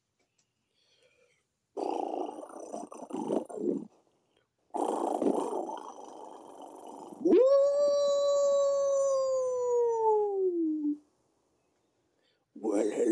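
A wolf howl: two stretches of rough growling, then one long howl that rises sharply and slowly falls in pitch.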